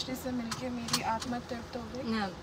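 A woman talking inside a car, with a low hum of the car underneath.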